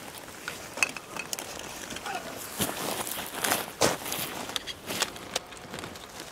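Irregular clicks and knocks of a DSLR camera and lens being handled during a lens change.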